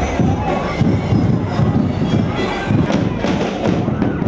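Marching-band drums, bass and snare-type drums, beating a steady parade rhythm over crowd noise.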